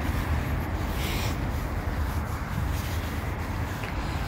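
Steady low rumble of road traffic, with a brief hiss about a second in.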